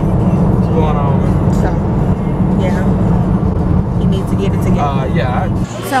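Steady low rumble of road and engine noise inside a moving car's cabin, with quiet talking over it. The rumble cuts off suddenly about five and a half seconds in, where restaurant chatter begins.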